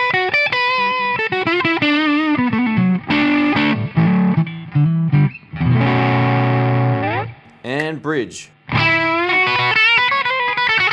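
Electric guitar, a '56 Custom Shop Les Paul with P90 pickups, played through a Joyo Rated Boost pedal with its gain turned all the way up into a Fender Blues Deluxe reissue amp: riffs and chords with a mild overdrive. A chord rings out about six seconds in, there is a short break near eight seconds, and the playing picks up again.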